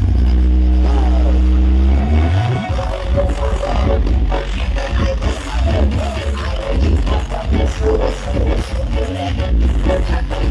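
Loud electronic dance music played through a huge street sound-system battle rig. A deep bass note is held for the first two seconds or so, then it breaks into a choppy, pounding bass beat.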